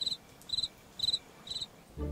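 Cricket chirping sound effect: evenly spaced short trills, about two a second, four in all.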